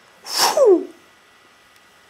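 A person making a short mouth sound effect for a magic spell: a breathy hiss with a voiced tone sliding down in pitch, lasting about half a second.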